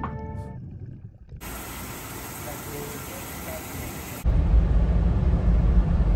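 Montage music ends within the first second; after a stretch of faint hiss, a car's cabin road noise, a low steady rumble, starts abruptly about four seconds in.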